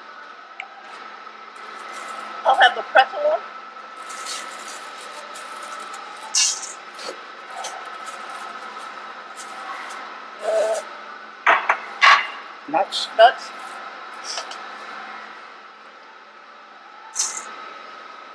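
Metal ladles scraping in steel topping pans and candy pieces dropping into a stainless-steel mixing bowl, in short scattered rattles and clinks, over a steady high hum.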